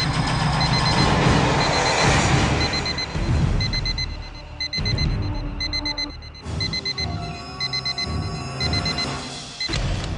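Dramatic background score: a loud swelling whoosh-and-boom in the first few seconds, then tense sustained tones, over a high electronic beep that repeats about every two-thirds of a second.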